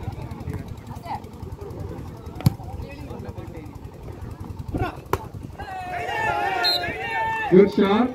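A volleyball being hit during a rally: a sharp smack about two and a half seconds in and two more about five seconds in, over a crowd's murmur. Voices call out near the end.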